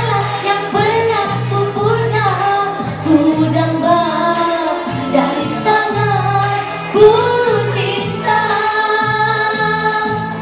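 A woman singing a Malay-language pop song into a microphone through a PA, over backing music with a steady beat.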